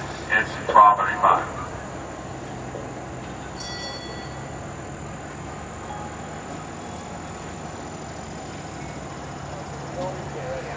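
A public-address announcer's voice trails off in the first second and a half, followed by steady outdoor background noise with a brief high tone about three and a half seconds in.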